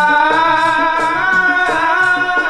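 A male lead singer holding one long sustained note of a Swahili Maulid qasida in maqam Rast, with a slight lift in pitch about half a second in and a wavering ornament near the end. Light frame-drum percussion sounds faintly underneath.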